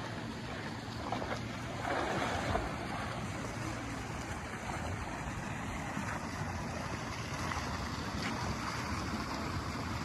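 Hot-spring pool water sloshing and swishing as a man wades in waist-deep, a little louder about two seconds in, with wind on the microphone.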